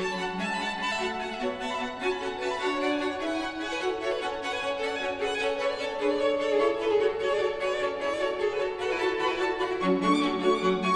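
String quartet of violins, viola and cello playing minimalist chamber music live: several sustained bowed notes layered together, shifting pitch in steps.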